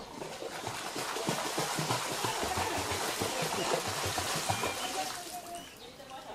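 Water splashing and churning around mute swans in a canal, swelling for about five seconds and then fading.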